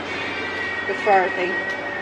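A steady high-pitched tone held at one pitch for about two seconds, with a woman speaking briefly over it about a second in.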